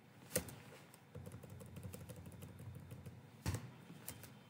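Computer keyboard keys being pressed: a sharp keystroke about half a second in and another near the end, with faint low rustling between.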